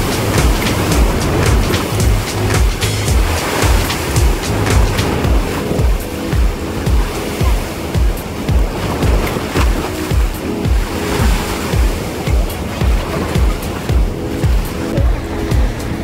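Sea surf breaking and washing against a rocky shore, mixed with background music that has a steady beat.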